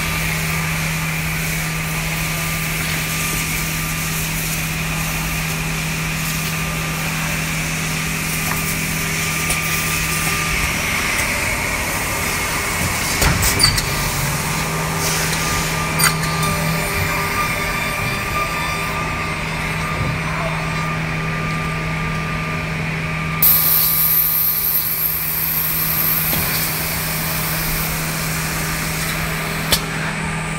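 S8 S468JP automatic edge banding machine running with a steady motor hum while a panel travels along its conveyor track. A few sharp clicks come from the machine along the way. About three-quarters through, a high hiss cuts in suddenly and lasts a few seconds.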